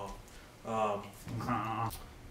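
A man chuckling to himself in three short bursts, the last and longest near the end.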